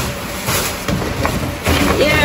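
Bags and packed belongings being handled and rustled, with a few short knocks and bumps.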